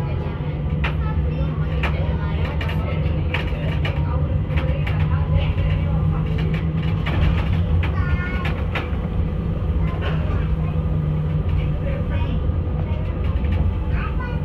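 Interior running noise of a street tram on the move: a steady low rumble from the wheels on the rails, with a low hum that drops away after about eleven seconds. Passengers' voices and a few clicks come through over it.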